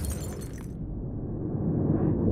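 Sound effect of an animated logo intro: a sudden crash with a bright, ringing tail that fades within the first second. Under it, a low rumble slowly swells toward the end.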